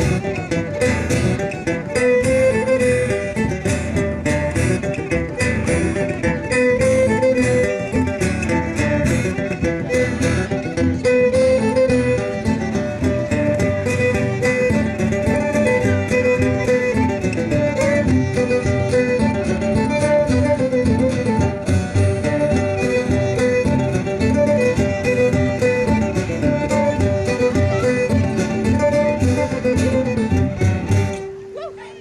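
Live folk string band playing a tune on fiddle, banjo and acoustic guitar, with a bodhrán.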